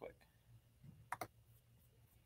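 Near silence with two faint, sharp computer clicks about a second in, a quarter-second apart.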